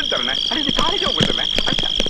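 Night chorus of frogs croaking over a steady high-pitched drone of insects, with a few sharp taps.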